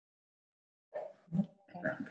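Dead silence for about the first second, then a few short voice sounds and a spoken "okay" over a video call.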